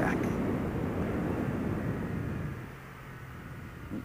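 Suzuki SFV650 Gladius V-twin motorcycle engine running under way, with wind and road noise; it gets clearly quieter about two and a half seconds in as the bike slows for a downhill switchback.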